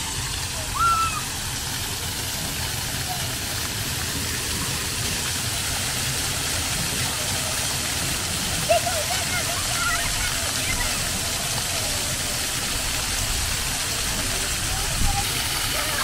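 Many water jets of a ground-level plaza fountain splashing steadily onto wet paving, with wind buffeting the microphone in a low rumble. Children's voices come through faintly now and then.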